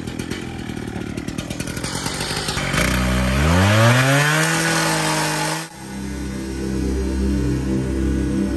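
Two-stroke petrol cut-off saw cutting a steel beam with its abrasive disc. The engine's pitch rises about three seconds in as it revs up under the cut, then the sound cuts off abruptly just before six seconds, and music with a pulsing beat follows.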